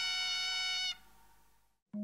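Ringing after the last struck note of a Burmese hsaing waing ensemble, its gongs sounding many steady tones that fade slowly, cut off suddenly about a second in.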